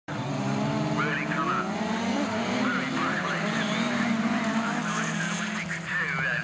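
A pack of autograss racing cars leaving the start line together, several engines revving hard at once and overlapping.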